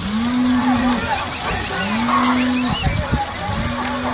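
A cow mooing three times, each call about a second long and starting abruptly, over a busy background of high chirps: a recorded farmyard sound effect opening the radio programme's jingle.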